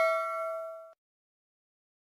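A bell-like ding sound effect from the subscribe-button animation, its several tones ringing out and fading, then cutting off about a second in. Silence follows.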